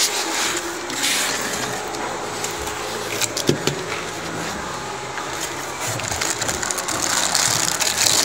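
Crinkling plastic and rustling packaging as a hand handles cables, foam inserts and a plastic-wrapped PTZ camera in a cardboard box: a steady rustle with many small crackles and clicks.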